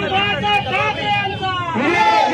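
A large crowd of men talking and calling out over one another in a dense babble of voices.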